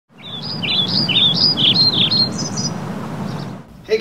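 A songbird sings a run of quick, high chirping notes over a steady low outdoor background noise. The song stops after about two and a half seconds, and the whole ambience cuts off just before the end.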